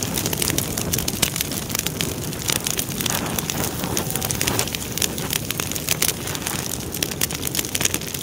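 A large fire burning: a steady rush of flames with frequent sharp crackles and pops.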